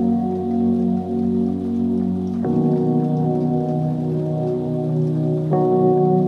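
Lo-fi hip hop instrumental: sustained mellow chords that change about two and a half seconds in and again near the end, over a light rain-like crackle.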